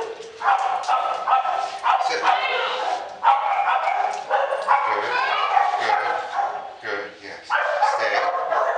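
Many dogs barking at once in a nearby dog daycare, a dense, overlapping din with barely a break. It eases briefly about seven seconds in.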